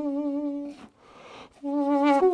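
Duduk holding a low reedy note with gentle vibrato, which breaks off about a third of the way in; an intake of breath is heard in the short gap before the same note returns near the end.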